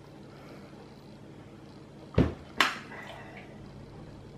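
Quiet room with a steady low hum, broken about two seconds in by two short, sharp knocks about half a second apart.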